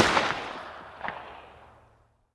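Gunshot sound effect with its echo dying away over about a second and a half. A fainter sharp sound comes about a second in.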